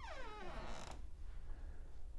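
Closet door hinge squeaking as the panel door swings shut: one short squeak falling in pitch, followed by a brief soft brush.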